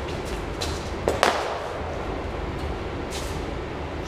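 A football being kicked: one sharp thud about a second in, with an echo off the bare concrete walls, over a steady low rumble.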